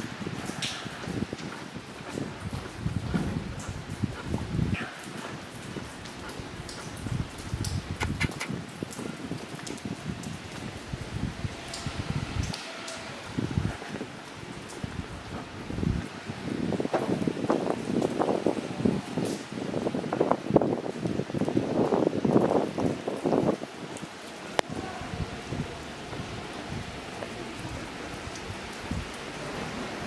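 Rain falling and dripping onto wet stone paving and walls, a steady patter with scattered clicks and knocks, heavier for several seconds past the middle.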